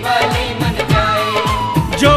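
Hindi devotional bhajan music to Baba Shyam: a steady drum beat under a melody line that glides down in pitch about a second in.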